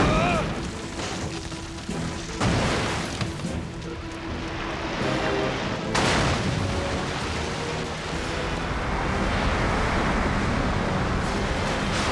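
Cartoon action soundtrack: dramatic music with heavy crashing impact effects, one at the start, one about two and a half seconds in and one about six seconds in. A steady rushing noise swells over the last few seconds as a flood of water is unleashed.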